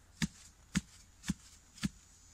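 Manual clamshell post-hole digger jabbed repeatedly into the soil: four sharp strikes about half a second apart, each a dull thud with a crisp click.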